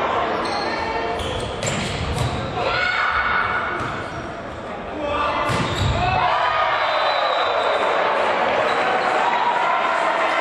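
Volleyball rally in a reverberant sports hall: a few sharp hits of the ball in the first half, then many voices shouting and cheering over each other from about six seconds in as the point ends.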